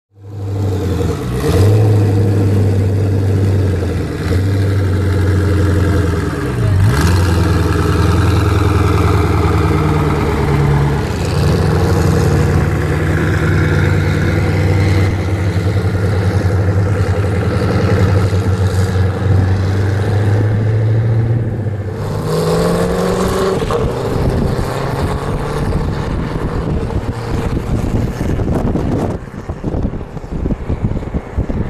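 Koenigsegg Agera RS twin-turbo V8 engines running at low speed with a steady, even note, then revving up about 22 seconds in as a car accelerates, the pitch rising.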